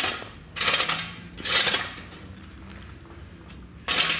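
Steel shovel scraping and scooping gravel twice, about a second apart, each stroke a short gritty rasp, as a worker spreads base gravel for a paver patio.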